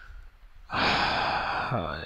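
A man's long sigh: a loud, breathy exhale lasting about a second, starting partway in and trailing off into a short, falling voiced sound.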